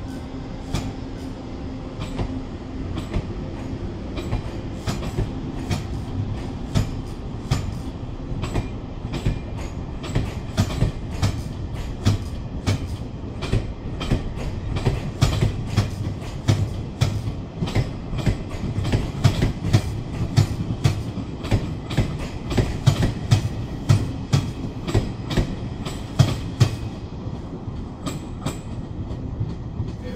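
Passenger coaches of a locomotive-hauled train rolling past, their wheels clicking over rail joints over a steady rumble. The clicks come faster and louder through the passage as the train gathers speed.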